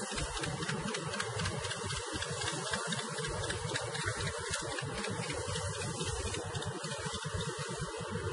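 Steady rushing noise over open water, with uneven low buffeting of wind on the microphone and a rumbling that may include the running engine of the boat being filmed from.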